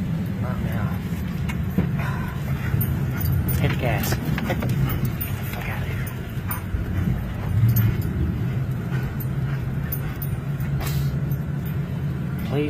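A car driving, heard from inside the cabin: a steady low engine and road rumble, with a dog whimpering now and then and scattered sharp ticks.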